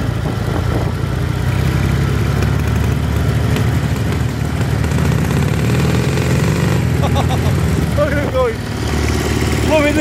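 Vehicle engine running steadily at low revs while driving slowly over grass, with a sidecar motorcycle passing close by. Brief voices come in about seven and eight seconds in.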